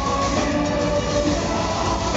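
Live band playing: electric guitars with held notes over drums, with a steady pulse in the low end, dense and continuous.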